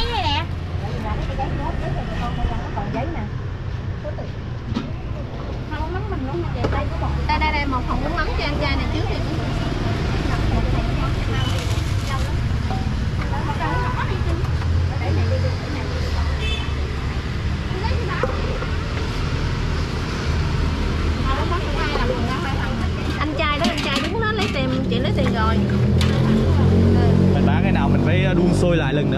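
Street ambience: a steady low rumble of traffic with people talking in the background and a few sharp clinks of kitchenware.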